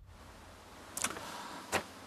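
Quiet room tone with a low hiss, broken by a brief faint click about a second in and another short sound near the end.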